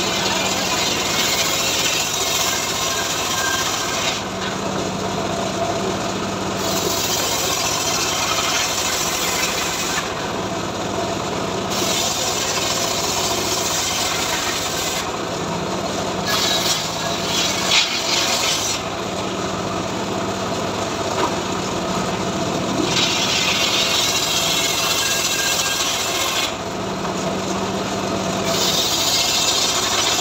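Homemade bench circular saw ripping mahogany boards lengthwise. There are about six cuts, each a few seconds of high, dense cutting noise as the blade runs through the wood, separated by short gaps where only the saw's motor hum runs on.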